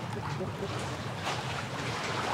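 Steady seaside wind and choppy sea water washing against a concrete seawall, heard as an even rushing hiss, with wind buffeting the microphone.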